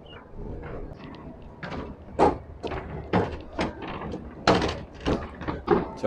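Footsteps knocking on a wooden plank walkway: a string of uneven thuds about half a second apart, starting about two seconds in.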